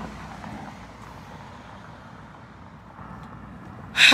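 Steady outdoor background noise of road traffic, a little louder in the first half second.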